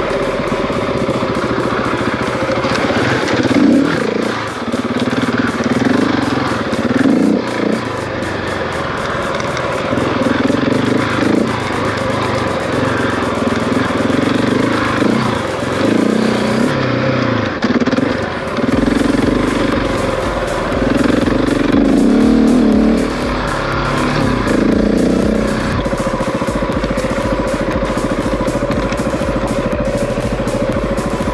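Husqvarna 701's single-cylinder engine running as the bike is ridden, its note rising and falling with the throttle, settling to a steadier note in the last few seconds.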